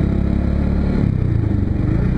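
Motorcycle engine running steadily while riding along a road.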